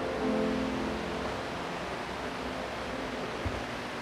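The last sustained note of a keyboard hymn accompaniment dies away in the first second, leaving a steady hiss of room noise with a soft low thump near the end.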